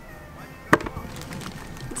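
A sharp snap about three-quarters of a second in, then a few faint crackles, as the head of a raw river shrimp is twisted off by hand.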